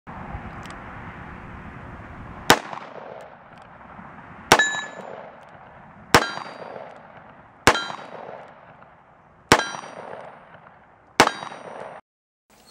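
Six shots from a Dan Wesson 715 .357 Magnum revolver, fired one at a time about one and a half to two seconds apart, starting about two and a half seconds in. Each shot is loud and sharp, with a short ringing tail.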